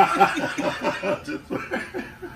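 A man and a woman laughing: a quick run of short laugh pulses that trails off towards the end.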